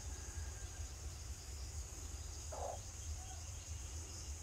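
Steady high insect drone over a low rumble, with one short faint call or cluck about two and a half seconds in.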